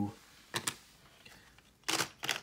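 A few short, light clicks as cardboard 2x2 coin holders with stapled corners are handled and picked out of a stack: two quick clicks about half a second in, and two more near the end.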